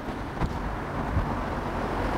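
Steady outdoor background noise with a low rumble, rising slightly in level, and a faint tick about half a second in.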